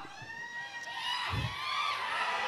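Faint audience cheering and whooping from a crowd of many voices.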